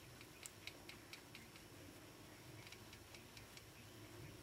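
Near silence with faint light ticks, about four or five a second in two short runs: a makeup brush and blush compact being handled while blush is applied.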